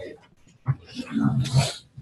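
A person's voice: a short, indistinct murmur, with a click just before it.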